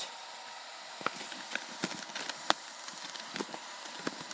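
Faint handling noise: scattered small clicks and rustles, with one sharper click about two and a half seconds in.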